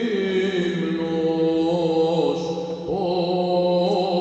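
Byzantine chant sung by a male chanter: a slow, melismatic melody that steps and glides between notes over a steady held lower drone note (the ison).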